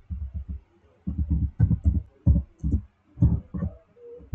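Computer keyboard typing: about a dozen irregular, dull keystroke thumps.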